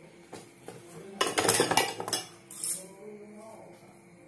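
Metal hand tools clinking and clattering as they are rummaged through and picked up from a workbench: two light clinks, then a burst of clatter a little over a second in, and one more clink later.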